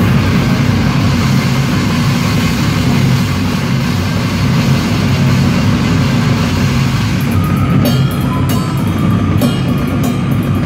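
Death-grind band playing live at full volume: a dense, heavy wall of low guitar and bass under fast drumming. Near the end, sharper drum and cymbal hits stand out.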